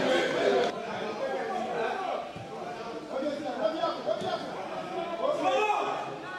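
Several people talking and calling out at once, a jumble of overlapping voices around a football pitch during play.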